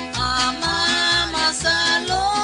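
A Latin American devotional song (alabanza): voices singing a melody line over instrumental backing with a steady bass beat.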